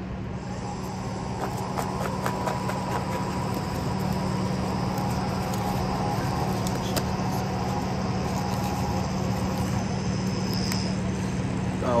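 Steady low mechanical hum with a few faint clicks and creaks as a styrofoam clamshell container is handled and opened.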